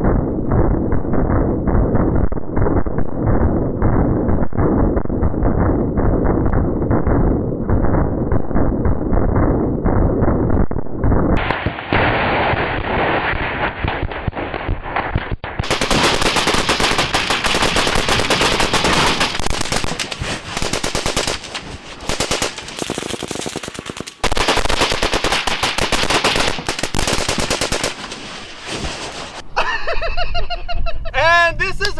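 Browning M2 .50-calibre heavy machine gun firing long automatic bursts, with short breaks between them, at propane and oxygen tanks that burst into fireballs.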